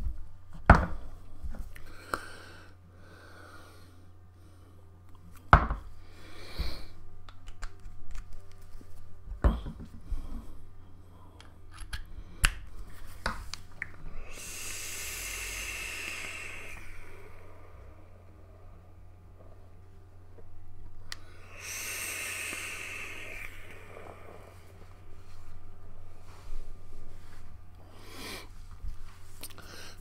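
Sub-ohm vape draws on a Joyetech eVic Primo mod with a rebuildable dripping atomizer fired at 105 watts on a 0.13-ohm coil: two long hisses of air and coil, each two to three seconds, about halfway through and again some six seconds later. A few sharp clicks of handling come before them, over a steady low hum.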